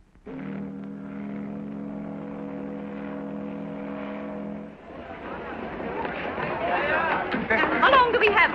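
Ship's steam whistle giving one long, steady blast of several tones at once, which cuts off a little past halfway. Then the chatter of a crowd rises and grows loud.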